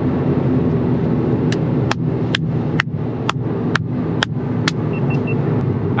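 Toyota GR Yaris's turbocharged 1.6-litre three-cylinder pulling at high speed, heard inside the cabin as a steady drone with tyre and wind noise. A run of about eight sharp ticks comes twice a second through the middle, and three short high beeps sound near the end.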